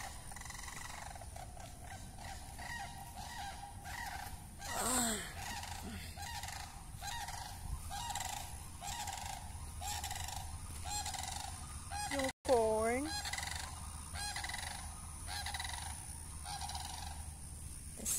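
Large birds honking: a steady run of short calls, somewhat under two a second, with two louder, longer calls about five seconds in and near the thirteen-second mark.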